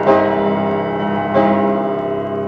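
Solo piano playing sustained chords. Two full chords are struck about a second and a half apart, and each is held and left to ring.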